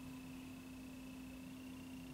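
Quiet room tone: a steady low hum with a faint thin high tone and light hiss, and nothing else happening.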